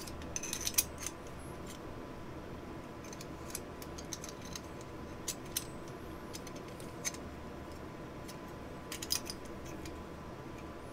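Metal M14-type trigger-group parts clicking and clinking as they are handled and fitted together by hand: scattered light clicks, a quick cluster in the first second and another a little before the end.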